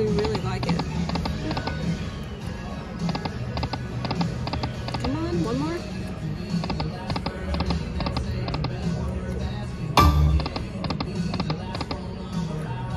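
Lightning Dollar Link Corrida de Toros slot machine spinning several times: its game music runs under a string of short chimes and clicks as the reels stop. A loud low thud comes about ten seconds in.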